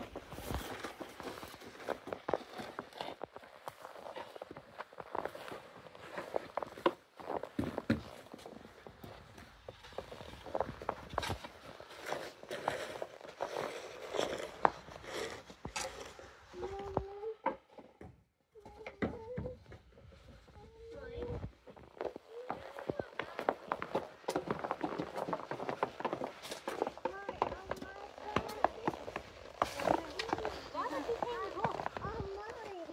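Small children's plastic snow shovel and broom scraping and knocking on a snowy driveway, with young children's voices chattering throughout. There is a brief silent gap about halfway through.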